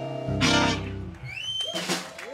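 Live band's electric guitars and bass ringing out on a song's closing chord, with one more strummed hit about half a second in that fades away. A short rising whistle follows near the end.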